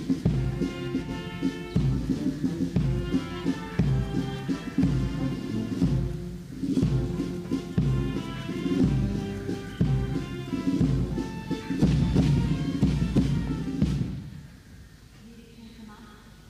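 Military band playing a slow march with drums, stopping about two seconds before the end and leaving only quiet background sound.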